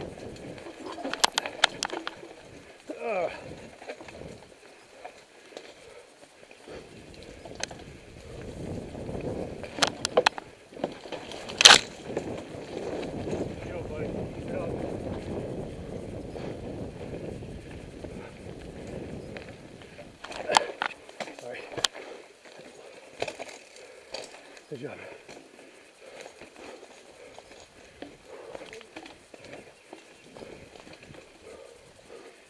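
Mountain bike rolling fast over a dirt singletrack: tyre and trail noise with the bike rattling, broken by sharp knocks as it goes over roots and log steps, the loudest about twelve seconds in.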